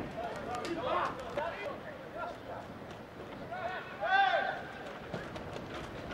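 Footballers shouting and calling to each other on the pitch, with one longer, louder call about four seconds in, over light knocks from play.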